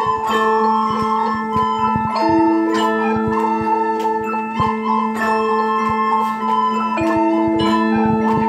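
A small ensemble of children's instruments playing together: a recorder melody over Orff-style wooden xylophones struck with mallets in quick repeated notes. A steady low note is held underneath throughout.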